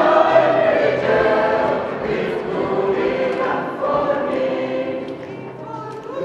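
Mixed choir of women's and men's voices singing sustained chords, the volume tapering off over the last couple of seconds.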